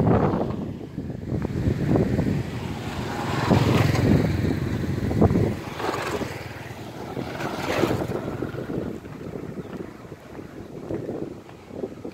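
Gusty wind noise on the microphone, with a motorbike passing close by about halfway through.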